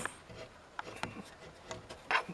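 A few faint, sharp clicks and taps of hardware being handled: a metal mounting bracket and a wooden support beam shifted by hand against a solar panel's frame.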